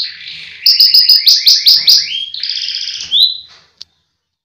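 Domestic canary singing: a buzzy held note, then a run of quick repeated downward-sweeping notes, a fast trill and a short whistle, dying away shortly before the end.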